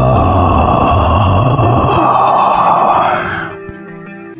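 Horror-intro sound effect: a long, harsh, groaning wail laid over music, fading out about three and a half seconds in and giving way to soft sustained ambient music tones.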